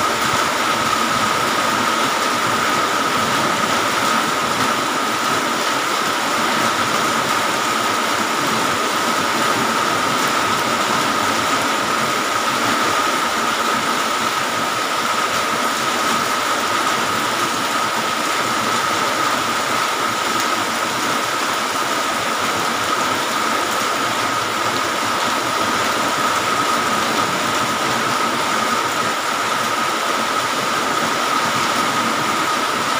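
Heavy rain falling steadily, an even hiss with a steady tone running through it.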